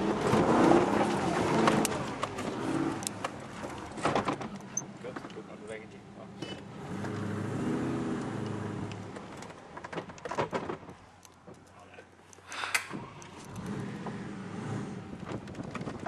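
Range Rover Classic's V8 engine running at low speed off-road, heard from inside the cabin, with frequent knocks and rattles as the vehicle bounces over rough ground.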